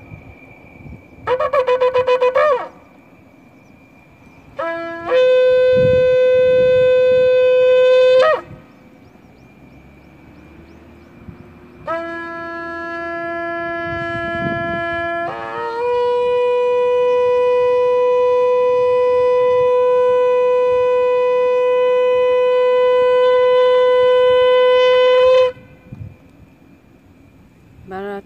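A shofar (curved horn) is blown in three blasts. The first is short and wavering. The second is a held note of about three seconds. The last is long: it starts on a lower note, breaks up to a higher one about midway, and holds steady for about ten seconds before cutting off.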